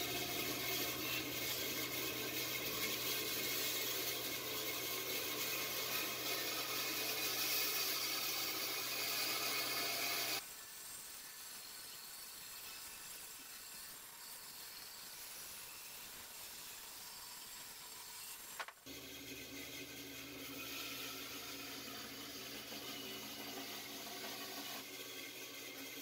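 Delta bandsaw running and cutting a rough-sawn walnut board: a steady motor hum with the hiss of the blade in the wood. About ten seconds in it drops to a quieter sound without the hum for several seconds, then the steady hum returns.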